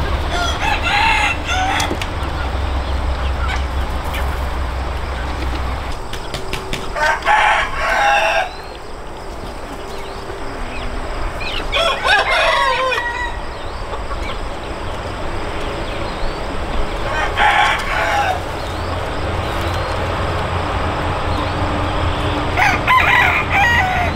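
Hmong black-meat roosters crowing: five separate crows, each a second or two long, about every five seconds, over a low steady rumble.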